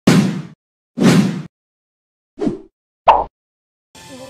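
Sound effects for an animated intro graphic: four separate short hits with silence between them. The first two each last about half a second, a second apart, and two shorter ones follow in the second half.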